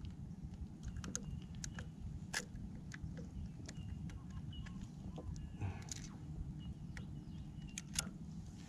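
Quiet handling noises: scattered small clicks and rustles of gloved hands working a small fish off the hook, with a somewhat louder rustle about two-thirds of the way through.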